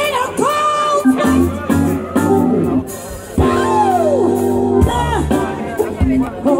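Live soul band playing on drums, electric guitar and keyboard, with a woman singing long held and sliding notes: a rise into a held note at the start and a long note that slides down about halfway through.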